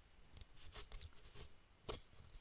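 Near-silent pause with a few faint scratchy noises, then a single sharp computer mouse click near the end.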